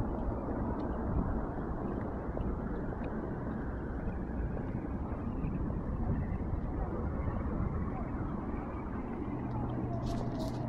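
Steady outdoor background noise: an even, low rumble with no distinct events.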